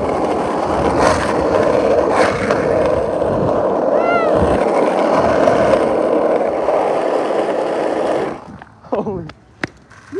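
Skateboard wheels rolling fast on asphalt as the board is towed behind an electric dirt bike, a loud steady rolling rumble that cuts off about eight seconds in as the board stops, followed by a few sharp clacks.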